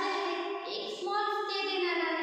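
A woman's high voice singing a simple melody, holding each note for about half a second or more.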